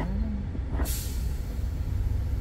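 Low steady rumble inside a stopped car with its engine idling. About a second in, a short, sharp hiss comes up and fades away within half a second.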